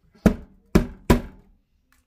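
Three sharp knocks as a brush handle strikes a solid block of ice frozen in a plastic tub in a stainless-steel sink, to knock the ice loose. Each knock has a short ring.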